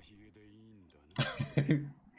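Faint anime dialogue, then a loud man's throat-clearing cough a little over a second in, lasting about half a second.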